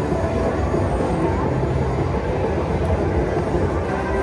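Thunder Drums Mayan Mask slot machine playing its Golden Drum prize-award sound, a steady low rumble with faint steady tones above it, as the drum's coin value is paid out.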